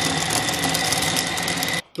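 Electric food processor running at speed with a steady motor whine, chopping a cod, bread and egg mixture into a paste. It cuts off abruptly near the end.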